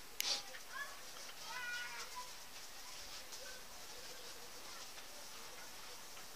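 A domestic cat meowing faintly: a short high call about one and a half seconds in, after a smaller rising one, with a knock of handling near the start.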